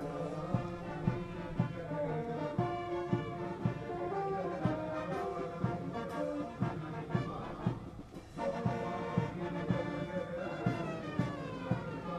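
Brass band music playing, with sustained brass notes over regular drum strokes.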